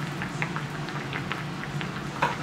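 A person chewing a cherry tomato: a string of short, soft, wet clicks at irregular spacing, over a steady low hum.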